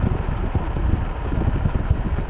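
A car driving along a road: a steady rumble and rush of road and engine noise.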